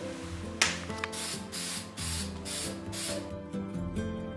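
An aerosol spray-paint can spraying in about six short bursts of hiss, roughly three a second, over a taped-off wooden chessboard. A single sharp noise comes just after half a second in.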